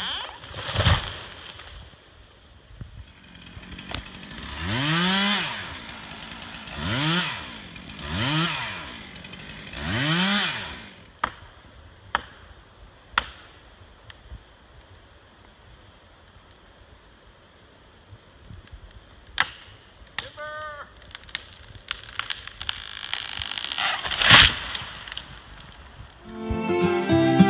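Two-stroke chainsaw revved four times in quick succession, each rev rising and falling in pitch, after a heavy thud about a second in as a felled tree hits the ground. A few sharp clicks follow, and a loud sudden crack comes near the end.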